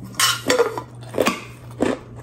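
Eating utensils clinking and scraping against dishware during a meal, about four short sharp clicks.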